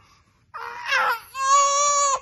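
Baby crying: a short breathy whine about half a second in, then one long, steady, high-pitched wail near the end.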